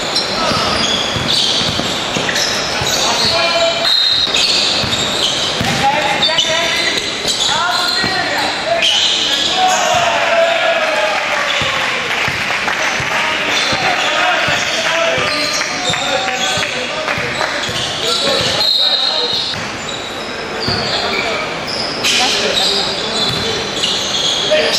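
A basketball bouncing repeatedly during play, with indistinct voices calling out, echoing in a large sports hall.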